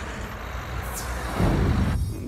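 Street traffic noise: a steady rumble of road vehicles, with a brief high hiss about a second in and a louder low rumble swelling over the last half second.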